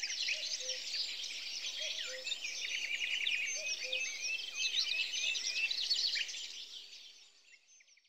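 A dense chorus of many small songbirds chirping and twittering together, with a low short note repeating about every second and a half underneath; the chorus fades out over the last second or two.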